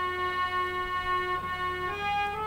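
Harmonium playing a melody in long held notes, with the pitch stepping to new notes twice near the end.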